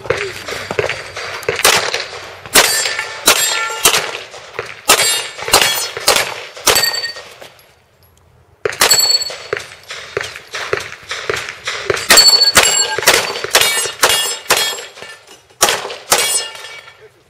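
Rapid pistol shots fired in quick strings, several followed by the short ring of steel targets being hit. The firing breaks off for about a second just before the halfway point, then resumes.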